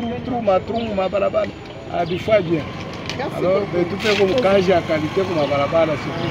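A man speaking continuously into the microphones, in words the recogniser did not write down.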